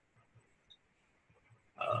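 A near-silent pause on a video call, with a few faint ticks. Near the end a man's voice starts a drawn-out hesitant "uh" that leads into speech.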